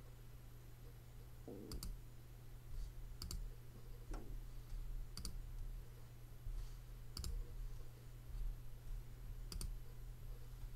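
Computer mouse clicked five times, a second or two apart, each click a quick double snap of press and release, over a low steady electrical hum.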